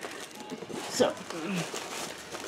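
Faint rustling and handling of a cardboard subscription box in its packaging, with a brief spoken "So" about a second in.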